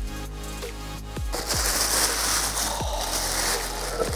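Tissue paper crinkling and rustling as it is pulled open in a shoe box, starting about a second in, over background music with a repeating falling bass beat.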